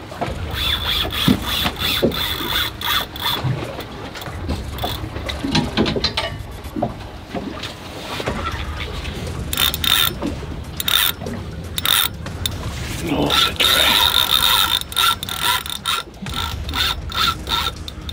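A spinning fishing reel being cranked while a fish is played on the line, its gears whirring and clicking, with a high steady whine that comes and goes several times.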